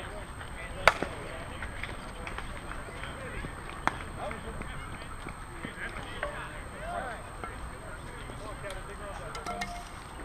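A softball bat striking the ball, one sharp crack about a second in. A fainter knock follows about three seconds later, with scattered voices in the background.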